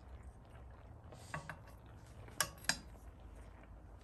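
Metal spoon knocking against a stainless-steel pan: a short scrape with a brief ring about a second in, then two sharp metallic clinks a third of a second apart near the middle. A faint steady low hum runs underneath.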